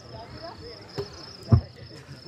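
Crickets chirping steadily, a thin high continuous tone, with one sharp low thump about one and a half seconds in.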